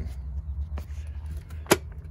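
One sharp metallic click near the end as a hand takes hold of a metal pull-out service disconnect box, over a steady low hum.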